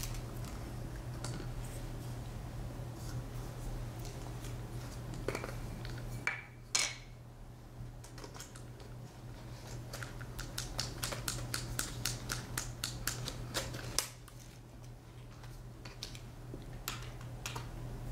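Hair stacker being tapped on a desk to even up the tips of a bunch of elk hair: one knock, then a quick run of light taps, about five a second, for some four seconds past the middle.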